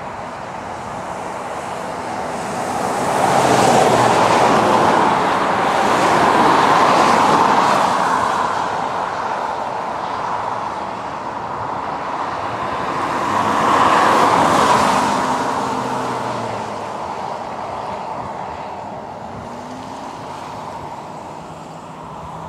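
Road traffic passing close by: rushing tyre and engine noise swells as vehicles go past, loudest about four to eight seconds in and again about fourteen seconds in, then eases off.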